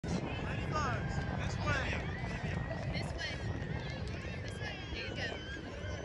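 Indistinct voices of children and adults calling out at a distance, over a steady low rumble.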